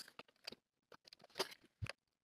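Faint handling sounds of sewing work: a few light, scattered clicks and taps, with a soft thump near the end.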